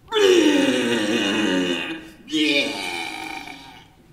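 A person's voice giving two long, loud, wordless cries, each sliding down in pitch; the first lasts about two seconds and the second, after a brief break, is a little shorter.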